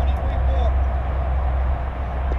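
Steady low rumble of outdoor ambience, with faint voices in the background.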